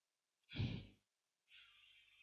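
A single short breath or sigh from the narrator about half a second in, otherwise near silence.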